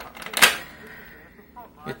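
A sharp plastic clack about half a second in, with a few faint clicks just before it, from a hand handling the controls of a 1980s Sharp colour TV.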